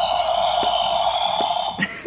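Billy Butcherson sidestepper animatronic running inside its box: a steady noise with a few faint clicks that fades just before speech returns.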